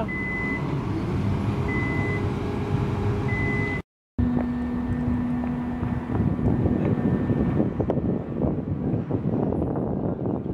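Truck's reversing alarm beeping, a half-second high beep about every 1.6 s, over the truck's engine running. Just before four seconds in, the sound cuts out briefly and gives way to steady outdoor noise with a low hum.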